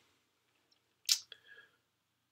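Near silence, then about a second in a short sharp click-like noise, a second fainter click and a brief faint sound. This is typical of mouth noise or a key press while the speaker works out a sum.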